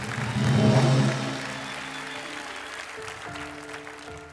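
Studio audience applauding, loudest about a second in and then fading, over background music with held notes.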